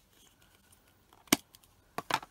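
Light handling sounds of craft supplies on a desk, with one sharp click of a hard object being put down about a second and a half in.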